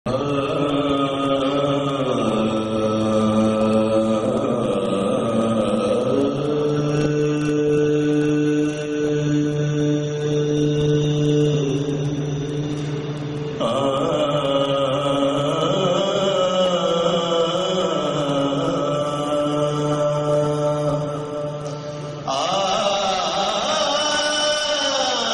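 Urdu naat chanted by voice in long held notes that drift slowly in pitch, with a few abrupt changes of phrase, one about halfway through and one near the end.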